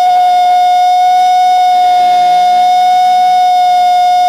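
Electric guitar feedback: one loud, steady high tone held without a change in pitch, as the opening of a hardcore punk track.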